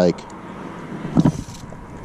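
Low, steady rumble of a car crossing the road bridge, with a faint hiss of tyres near the middle.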